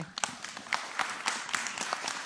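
An audience applauding: many people clapping at once in a dense, irregular patter.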